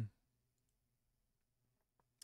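Near silence with a few faint clicks of a computer mouse as a file link in the browser is opened.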